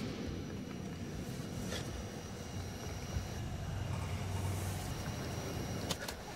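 A steady low rumble of room ambience on an old video soundtrack, with a faint hiss and a couple of faint clicks; no music or voice.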